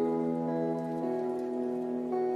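Slow, sad instrumental music of held chords that shift every half second or so, with a sound of falling rain underneath.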